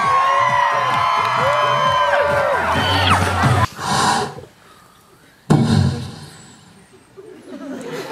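Dance music with a beat under an audience cheering and shouting, cut off abruptly about three and a half seconds in. After a brief burst and a quiet pause, a sudden loud burst of crowd noise breaks out and dies away.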